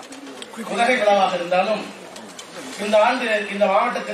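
A man giving a speech in Tamil into a microphone in a hall, with a short pause about halfway through.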